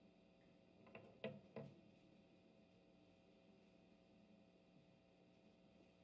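Near silence: room tone with a faint steady hum, broken by three short, faint knocks between about one and two seconds in.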